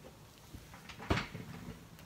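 Handling noise: a single knock about a second in, with a fainter tap just before it.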